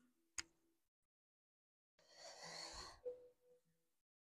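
Near silence broken by a woman's faint breath, an audible exhale lasting about a second starting two seconds in, with a single soft click near the start.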